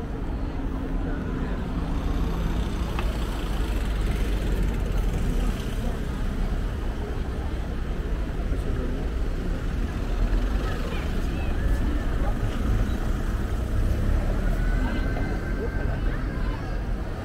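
Street traffic: cars driving past over a cobblestone road with a steady low rumble, and people's voices nearby.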